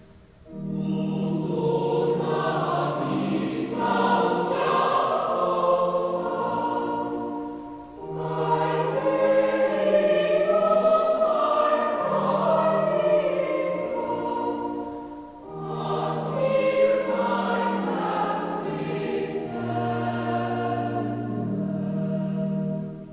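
A choir singing a slow, sustained sacred piece in long phrases, breathing briefly about a third of the way in and again past the middle, over a steady low sustained part.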